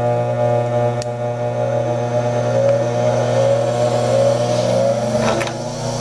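Bench grinder just switched on, its electric motor and wheels running with a steady hum and whir. In the second half a tone slowly rises in pitch, and there is a light click about a second in.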